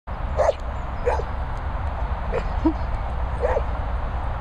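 A collie-cross dog barking in play at a ball: four short, high-pitched barks about a second apart.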